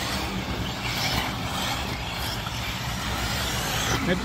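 Radio-controlled off-road buggies racing on a dirt track, a steady mixed noise of their motors with faint rising and falling revs, over a low rumble.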